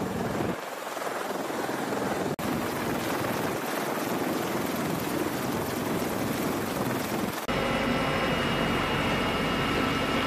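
CH-53E Super Stallion heavy-lift helicopters running on the flight line: a loud, steady rush of rotor and turbine noise. About seven and a half seconds in, it cuts to a steadier sound from inside a helicopter cabin, with high steady turbine whines on top.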